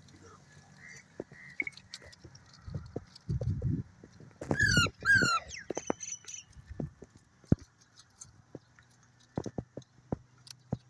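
Indian ringneck parakeets calling: two short, sharp calls about halfway through, each falling in pitch, followed by a brief high whistle, among scattered soft clicks and chirps. A short low rumble comes just before the calls.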